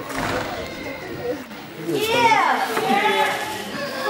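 Excited voices shouting and whooping, with high, steeply sliding cries about halfway through.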